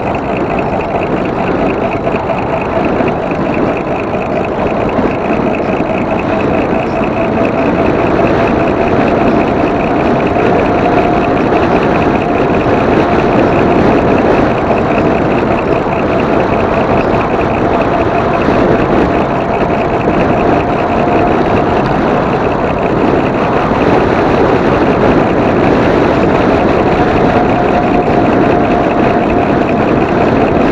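A 52-volt e-bike motor running at steady speed, its thin whine holding one pitch and rising slightly about ten seconds in, under a loud, even rush of wind and tyre noise.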